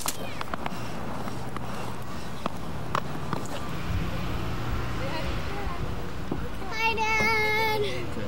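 Outdoor camcorder sound with a low steady hum and a few light knocks. Near the end a child's high voice is held on one wavering note for about a second, a sung or drawn-out call.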